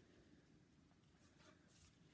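Near silence, with faint brushing sounds of a cardboard board-book page being turned, a couple of them in the second half.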